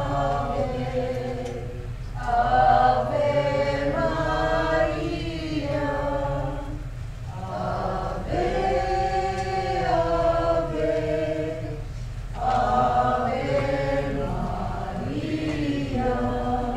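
A congregation singing together in unison: three long, held phrases with short breaks for breath between them, over a steady low hum.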